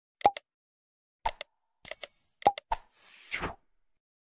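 Sound effects of an animated subscribe end screen: several short mouse-click pops, a brief bell-like ding around two seconds in, and a soft whoosh near the end.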